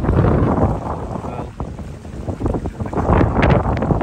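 Wind buffeting the microphone in uneven gusts, easing briefly about halfway through and then building again.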